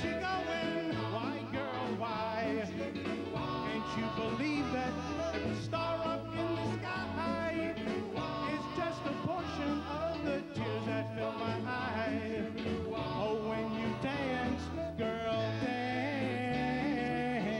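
Live doo-wop music: a vocal group singing harmonies over a band with electric guitar, bass and drums.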